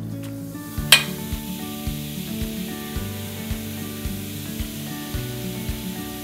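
Fizzy bath salts hissing in a dish of water as the baking soda and citric acid react, with a sharp tap about a second in as the scoop of salts goes in. Background music with a steady beat runs underneath.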